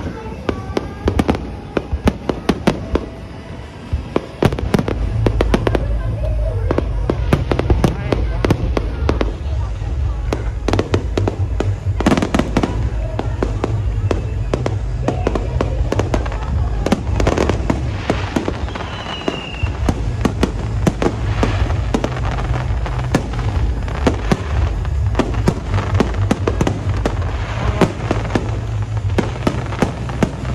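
Fireworks display: a rapid, uneven series of bangs and crackles from aerial shells bursting overhead. Music with a heavy low bass runs underneath from about four seconds in.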